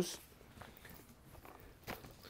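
Faint handling noise from a drywall sander and its vacuum hose being lifted and moved, with one short click near the end.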